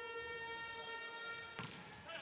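A steady, unwavering pitched tone with a bright, buzzy edge from many overtones, held for about a second and a half before it fades. A single short sharp knock follows.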